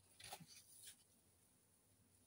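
Faint scraping of a piece of mount card dragged through a thin layer of oil paint on an inking slab, two short strokes within the first second, then near silence.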